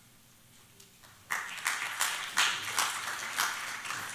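Audience applauding, starting after about a second of quiet and dying away toward the end.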